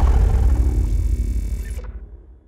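The dying tail of an intro logo sting: a deep bass boom rumbling and fading away, with a high hiss over it that cuts off near the end.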